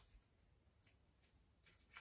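Near silence: room tone, with a faint click at the start and another near the end.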